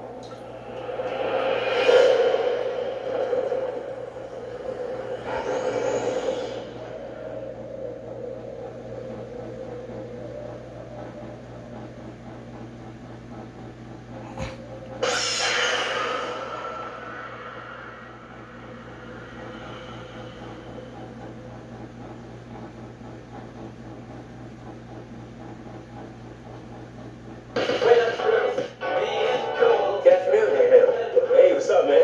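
Movie-trailer soundtrack played through a television's speaker: music with loud swelling hits about 2, 6 and 15 seconds in, then a long quieter stretch with a faint steady hum. The next trailer starts loudly near the end.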